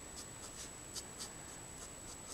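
Letraset Promarker alcohol marker nib stroking across cardstock, faint short scratchy strokes about two or three a second as the colour is laid down.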